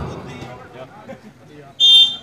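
A referee's whistle gives one short, shrill blast near the end, signalling the serve, over faint crowd murmur.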